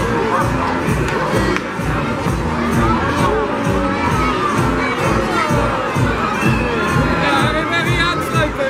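A crowd of children shouting and cheering, many high voices overlapping.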